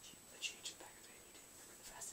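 Very quiet room with a faint steady high-pitched whine and a couple of faint short ticks or rustles about half a second in.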